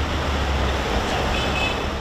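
Steady city street ambience: a continuous low rumble of traffic with general urban noise.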